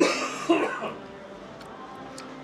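A person coughing, two coughs about half a second apart.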